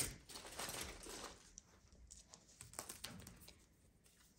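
Faint rustling and light clicks of hands handling a soft sewing tape measure, opening with one sharp click.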